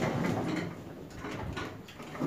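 Faint sounds of a wooden-framed glass door being gone through, with a few short scuffs and knocks that fade away.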